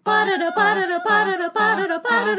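A cappella vocal jingle: voices singing wordless syllables like "bam bum" and "parana" in short, rhythmic notes, a few per second, as the podcast's opening theme.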